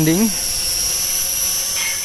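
SG900-S quadcopter's motors and propellers whining steadily at an even pitch as it comes down under auto-landing.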